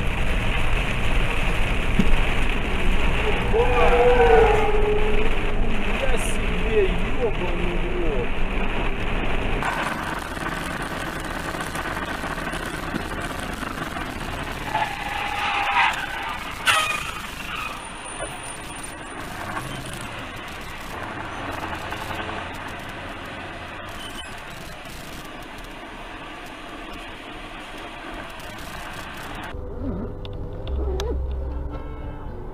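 Dashcam recordings of vehicle engine and road noise inside moving vehicles. The noise is loud for the first ten seconds, with a voice calling out a few seconds in, then quieter, with sharp knocks about sixteen seconds in.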